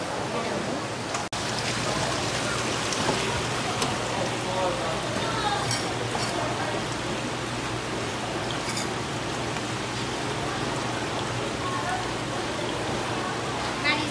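Water running steadily along a gem-mining sluice flume, with faint voices in the background.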